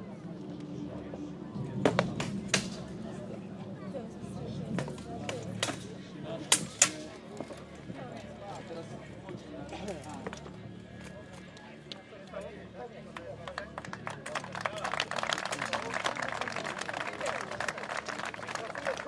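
Armoured sword fight: steel swords striking shields and armour in a quick run of sharp clanks in the first seven seconds. The bout over, the crowd applauds near the end.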